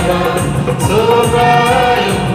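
Church choir, mostly women's voices, singing a gospel hymn together, with long held notes.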